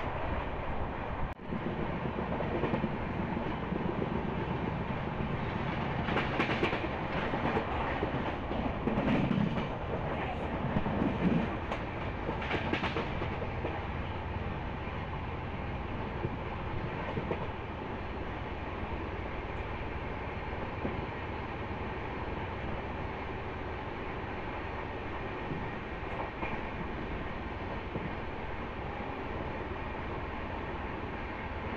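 Passenger train coach running along the track, heard from its open doorway: a steady rumble of wheels on rail, with a louder stretch of clattering roughly 6 to 13 seconds in.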